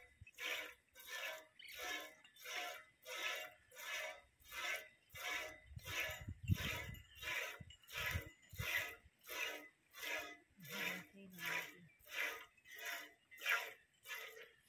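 Milk squirting from a cow's teats into a steel pot during hand milking, in a steady rhythm of about two squirts a second. A few low thumps sound about halfway through.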